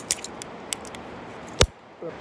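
Carabiners and rappel gear clicking and clinking as a tether is worked off the anchor: several light metallic clicks, then one sharp knock about one and a half seconds in.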